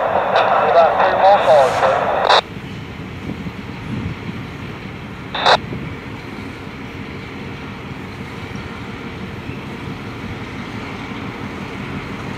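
Two-way radio voice traffic through a scanner, thin and band-limited, cutting off about two seconds in, with a short radio burst a few seconds later. Under it and after it, the EMD GP38-2 locomotive's 16-cylinder 645 diesel engine is running with a steady low rumble as it moves slowly along the yard track.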